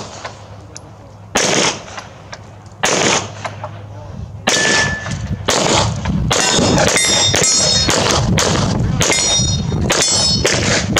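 Pistol shots fired at steel targets, at first spaced more than a second apart, then coming faster, about two a second, through the second half. The steel plates ring with a thin metallic tone after the later shots.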